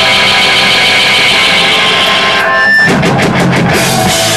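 Rock band playing live, with electric guitars and a drum kit. A held guitar chord rings for the first couple of seconds, then the drums play a quick run of about six hits just before the next part of the song starts.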